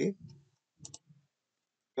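A computer mouse click, a quick press and release a little under a second in, selecting a spreadsheet cell.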